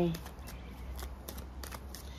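Tarot cards being handled: a few faint, short clicks and snaps of the cards, over a low steady hum.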